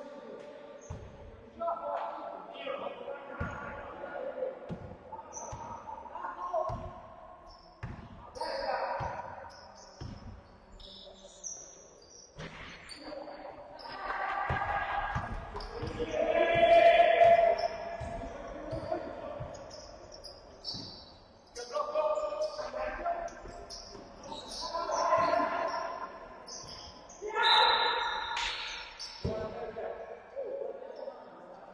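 A basketball bouncing on a wooden sports-hall floor in irregular thumps as play moves up and down the court, mixed with players' shouts echoing in the hall.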